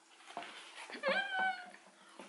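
A woman's short high-pitched squeal of delight while chewing a potato wedge: one call about a second in that rises and then holds. A few small mouth clicks come before it.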